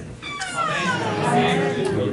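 A high, cat-like cry that glides down in pitch for about a second, then holds a steady lower note before stopping near the end.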